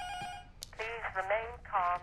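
A steady electronic telephone tone that cuts off about half a second in, followed by a thin, tinny voice heard through a telephone line.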